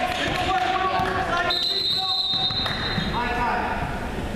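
A basketball bouncing on a hardwood gym floor among players' shouts. A referee's whistle sounds one steady blast of about a second, about a second and a half in.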